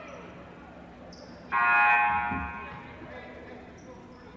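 Gymnasium scoreboard horn sounding once, about a second and a half in, a loud blast of about a second that fades out. It signals the end of a timeout in a basketball game.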